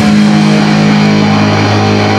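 Live punk rock band playing loud, led by a distorted electric guitar holding a steady low chord.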